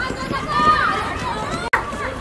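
High-pitched shouting and calling in young women's voices, with no clear words. A sudden brief dropout and click near the end.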